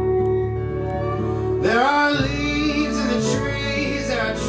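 Live acoustic guitar and upright bass playing sustained chords. About one and a half seconds in, a male voice slides up into a held sung note without words.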